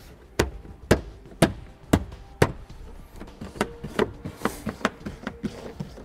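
Plastic interior trim panel of a 2017 Honda CR-V's cargo area being pressed back on, its push-in fasteners seated with five sharp knocks about half a second apart, followed by lighter clicks and rustling of the panel and weather stripping.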